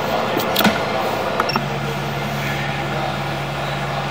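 Steady drone and hiss of sewer jetting equipment running, with a couple of light clicks near the start. About one and a half seconds in, at an edit, a steady low hum sets in.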